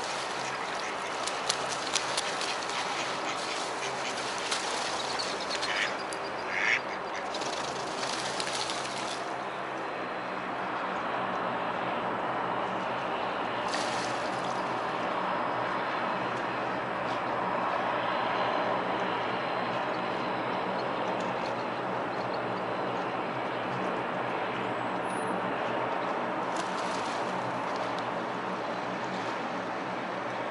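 Mallard ducks quacking, with a duck splashing and flapping off the water in the first several seconds, a burst of sharp splashes and wingbeats among short calls. After that a steady wash of outdoor background noise carries on.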